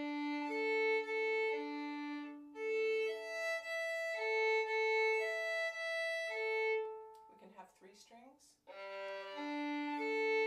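Violin bowed in smooth slurred string crossings on open strings, rocking back and forth between two strings, first D and A, then A and E. After a short pause just before the end, it starts slurring across three strings, G, D and A.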